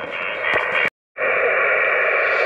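Static hiss from an HF transceiver's speaker as it is tuned across the 20-metre amateur band, with no station being received. It cuts out completely for a moment about a second in, then resumes.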